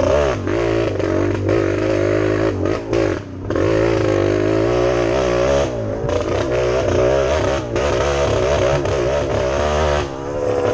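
Vintage off-road motorcycle engine revving up and down continuously under constant throttle changes on a twisting dirt trail, with brief drops in revs about three seconds in and again around six and near eight seconds.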